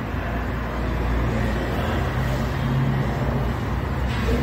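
Steady low rumble of background noise, like road traffic or a running machine.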